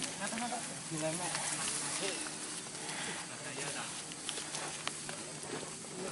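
Indistinct background voices: people talking and calling out at a distance, with no clear words.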